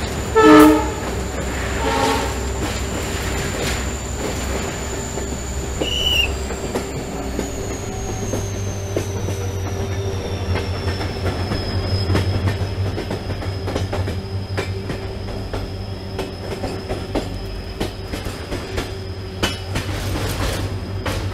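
A train running on a curving mountain line: a short blast of the diesel locomotive's horn about half a second in, a fainter one around two seconds, then steady rumble and rail clatter under a thin high squeal that slowly falls in pitch, typical of wheel flanges grinding on tight curves.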